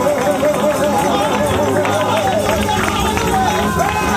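Live gospel praise music: a held vocal line wavering in pitch over keyboard, drums and tambourine, with a deeper bass coming in a little past halfway.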